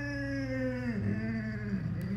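A frightened brindle Boxer–Plott hound mix dog giving one long drawn-out whine that slowly falls in pitch, then wavers lower near the end.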